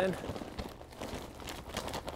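Potting soil being poured from its bag into a pot, a faint, irregular rustling and pattering of soil and bag.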